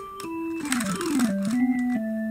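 Sampled organ in the Kontakt 3 software sampler playing single held notes one after another: the line steps and slides down in pitch, then steps back up near the end.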